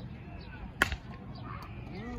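A softball bat hitting a soft-tossed softball: one sharp crack about a second in.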